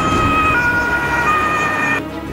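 Two-tone emergency-vehicle siren alternating between two pitches, switching about every three-quarters of a second, over a low rumble.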